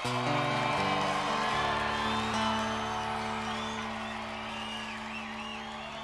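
Soft live acoustic music: a few held chords that ring on and slowly fade, with faint cheers from the audience.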